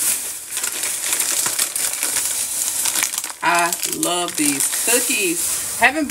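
Thin plastic grocery bags crinkling and rustling as groceries are lifted out of them, for the first half; then a woman's voice takes over.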